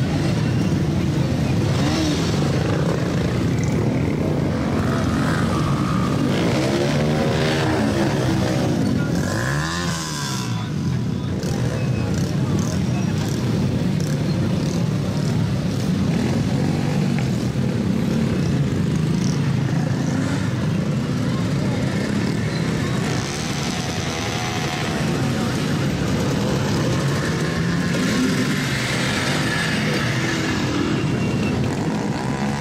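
A pack of small motorcycles running at low speed close by, engines idling and blipping. One engine revs up and falls back about eight to ten seconds in. Voices are mixed in throughout.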